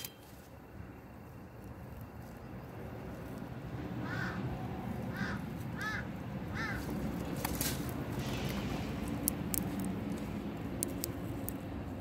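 A bird, crow-like, gives four short arched calls about four to seven seconds in, over a low rumbling outdoor noise that swells over the first few seconds. A few sharp clicks follow in the second half.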